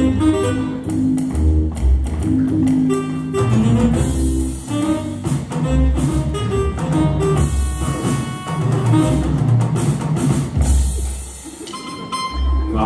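Instrumental music with a bass line and a steady drum beat, without singing, dropping in level near the end.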